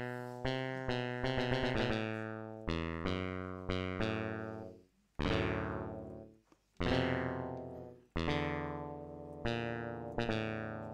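Software synthesizer in Bespoke Synth playing a series of single notes and chords, each starting sharply and fading away. There are short pauses about five and six and a half seconds in.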